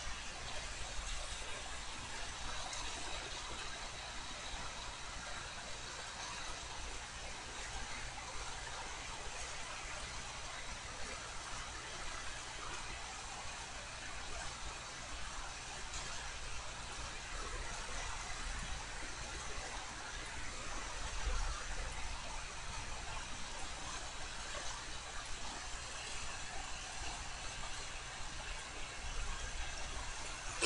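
Faint steady hiss with a low hum underneath: background room tone, with no distinct events.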